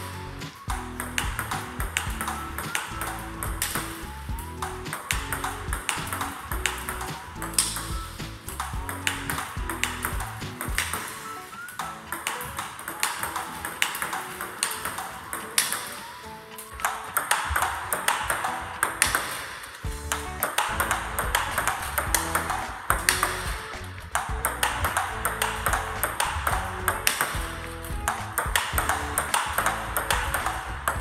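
Table tennis balls struck again and again in multiball practice: sharp paddle hits and table bounces in quick succession. Background music plays under them.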